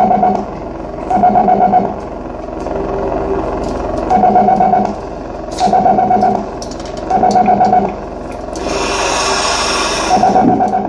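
Live experimental electronic music: a pulsing electronic tone pattern repeating roughly once a second over a steady low drone, with a harsh burst of noise near the end.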